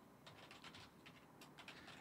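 Faint computer keyboard typing: an irregular run of key clicks, several a second.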